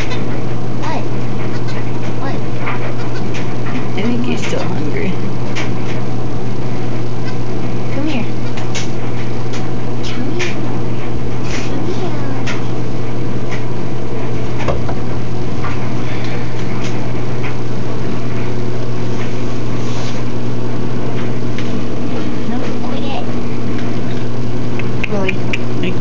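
A steady low hum with scattered small clicks and rustles over it.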